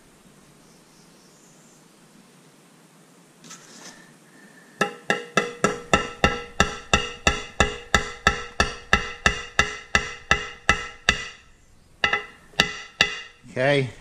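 Hammer tapping on metal, about three taps a second, each strike ringing with a metallic tone, then a short pause and three more taps near the end. The taps drive the impeller key down into its slot on the drive shaft of a Yamaha outboard, snug and straight.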